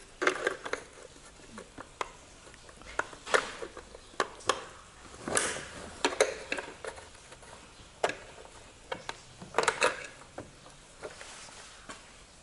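Irregular light clicks and taps of a screwdriver and fingers on the plastic housing of an Audi Q7 exterior mirror as its retaining hooks are pried free, with a quick cluster of clicks near the end.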